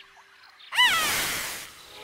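A cartoon dragon's short squeaky cry that rises then falls in pitch, over a hiss that fades away within about a second.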